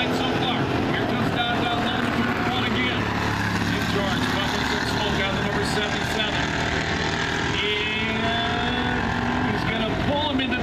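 Several street stock race cars' engines running together around a dirt oval, a steady layered drone heard from the grandstand.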